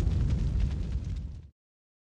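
Low rumbling tail of a cinematic boom sound effect from a closing logo sting, fading steadily and cutting off to silence about one and a half seconds in.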